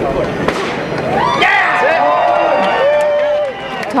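Crowd of marathon runners at the start line: a single sharp bang about half a second in, then several voices whooping and cheering, with rising and held shouts.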